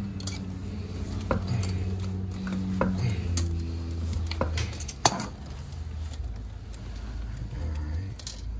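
Channel-lock pliers clicking and clinking against a stubborn toilet closet-bolt nut as they are worked at the base of the toilet: scattered sharp metal clicks, the loudest about five seconds in, over a low steady hum.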